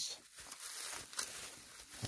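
Bubble wrap rustling softly as it is handled, with a few light crackles.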